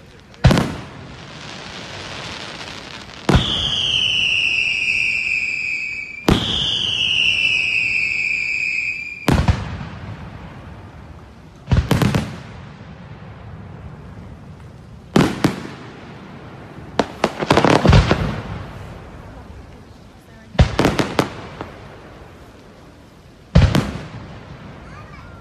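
Daytime fireworks: aerial shells bursting every few seconds, some with crackling reports and a tight cluster of them past the middle. Two long whistles, each falling in pitch for about three seconds, run between the early bursts.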